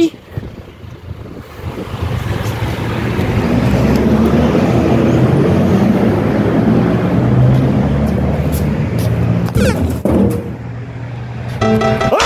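Road traffic passing close by: engine and tyre noise builds about two seconds in, holds for several seconds, and drops away about ten seconds in.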